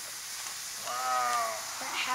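Paper and vinyl rustling as an owner's manual booklet is pushed into a vinyl document pouch on a plastic motorcycle body panel, with a short pitched sound about a second in.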